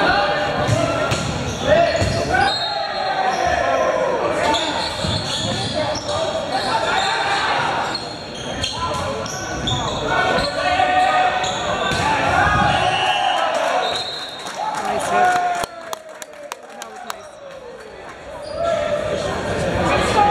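Indoor volleyball rally in a school gymnasium: the ball struck and hitting the hard floor amid players' calls and spectators' shouts, all echoing in the large hall. The voices drop away for a couple of seconds near the end, leaving sharp clicks.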